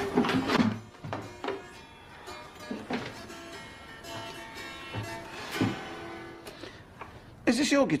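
Electric guitar being played: a run of plucked notes and chords, louder at first and softer in the middle. A man's voice speaks over it just before the end.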